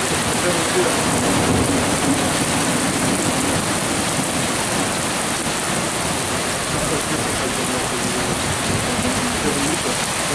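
Heavy thunderstorm downpour: a steady, even hiss of rain pouring onto flooded paving.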